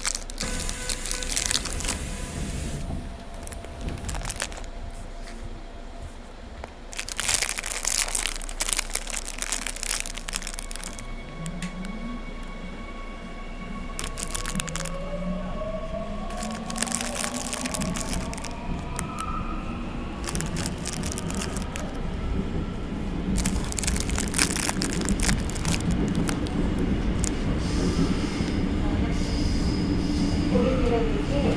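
Seoul Metro Line 9 electric train pulling away: about eleven seconds in, the whine of its traction motors starts and climbs steadily in pitch, then running noise builds louder toward the end. Sharp clicks and knocks come in clusters throughout.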